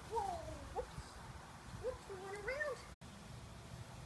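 A dog whining: a short falling cry near the start, then a longer, wavering whine about two seconds in.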